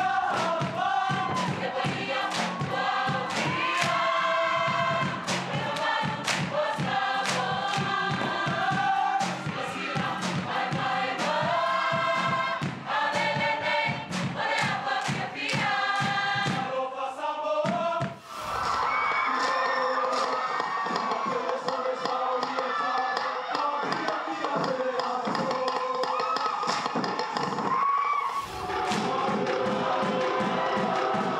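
Samoan school performance group singing together, with sharp rhythmic claps and slaps keeping time. About eighteen seconds in, it changes to a choir holding sustained harmonies without the claps, and rhythmic claps come back near the end.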